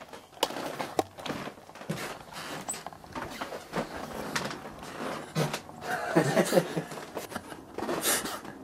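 Irregular soft knocks and clicks of footsteps and handling in a small room, with faint muffled voices about two-thirds of the way in.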